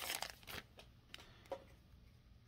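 Foil wrapper of a Panini Absolute football card pack crinkling faintly as it is torn open and the cards are slid out, followed by a few soft clicks of the cards being handled.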